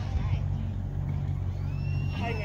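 A steady low engine rumble, with children's voices faint in the background.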